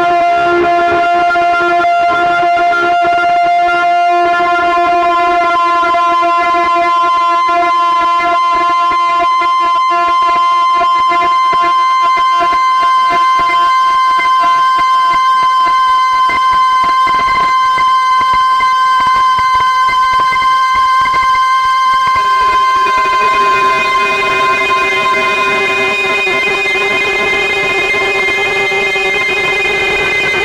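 Live synthesizer drone from a Novation Peak, Soma Pipe and Soma Cosmos rig: sustained, steady tones rich in overtones over a rough, noisy texture. About 22 seconds in, the drone shifts to a different set of held tones.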